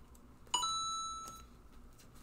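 A single bright ding, like a chime or notification tone, about half a second in, ringing clearly and fading away over about a second.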